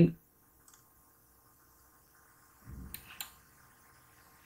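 Two computer mouse clicks in quick succession about three seconds in, with a soft low thud just before them; otherwise the room is nearly silent.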